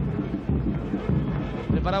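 Steady background noise from a televised football match, low and busy, with a commentator's voice coming in just at the end.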